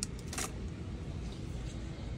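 Steady low background hum of a large store's interior, with a short scratchy rustle about half a second in.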